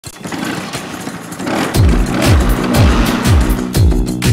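A Bajaj Chetak scooter's engine being kick-started and catching, with irregular running noise. After about a second and a half, music with a heavy beat takes over, its falling bass note repeating about twice a second.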